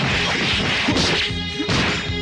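A rapid flurry of punch and impact sound effects from an anime fistfight, over background music.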